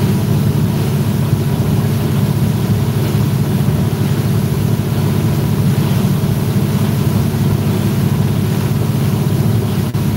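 Boat running underway on a single outboard engine after the other's lower unit was knocked out: a steady, loud low drone of engine, hull and wind.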